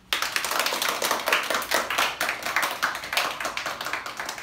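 Small group of people clapping by hand, breaking out all at once and running on as a fast, uneven patter of many claps.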